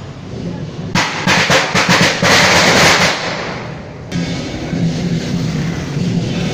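Traditional temple-procession percussion, drums and crashing cymbals, loud and dense for about three seconds from a second in, then breaking off abruptly into a quieter, steadier sound.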